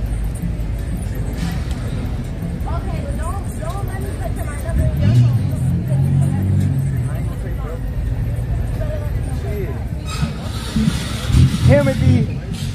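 Busy street ambience: a steady low rumble of traffic with background voices and music. The rumble swells louder about five seconds in, and a voice comes in near the end.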